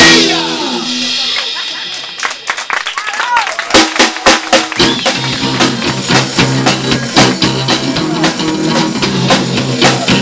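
Live rock band of electric guitar, bass guitar and drum kit. A loud crash at the start rings out for about two seconds, a few scattered drum hits follow, and the full band comes back in with a steady beat about five seconds in.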